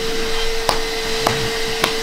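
Vacuum with a hose running steadily with a constant hum, sucking dirt out of a reptile enclosure; three sharp clicks as bits of debris are drawn up the hose.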